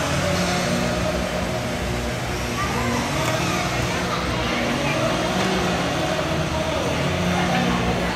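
Ice rink ambience: a steady mechanical hum under indistinct chatter and calls from players and spectators.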